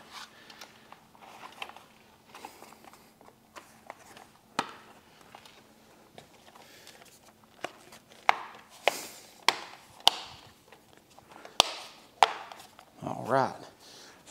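Handling noise from a plastic motorcycle frame cover and wiring harness being pressed and pulled, with scattered light clicks and, in the second half, a run of sharp plastic snaps and clicks as the cover is pushed down.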